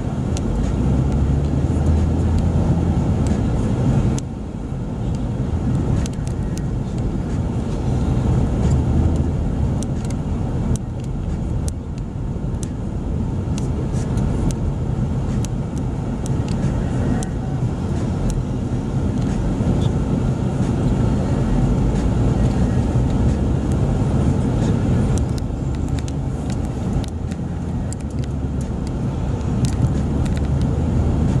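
Car engine and road noise heard from inside the cabin while driving: a steady low rumble, with small clicks now and then.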